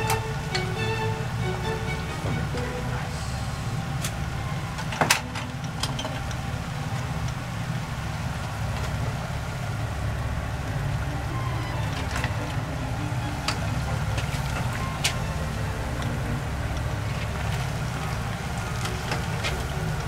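Steady low rumble from the stove, with sharp metallic clinks of utensils against the cookware as spaghetti is lifted from its pot into the pan of clams: one about five seconds in and several more between about twelve and fifteen seconds.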